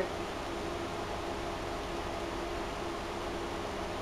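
Steady background hiss with a faint low hum: room tone with no distinct sound events.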